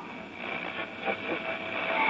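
Vintage tube AM radio being tuned across the dial between stations: static and hiss with faint, broken snatches of station voices, getting louder near the end as a station starts to come in.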